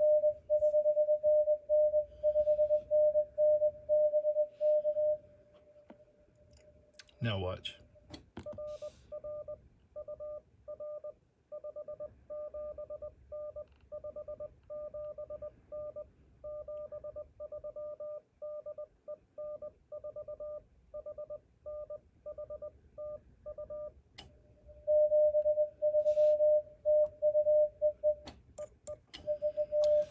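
Morse code (CW) on a Yaesu FTdx5000 transceiver: a loud, steady mid-pitched sidetone keyed in dots and dashes as the operator sends, then a quieter keyed tone of the same pitch as the other station's reply comes in over the receiver, then the loud sidetone again near the end. A short falling swish about seven seconds in.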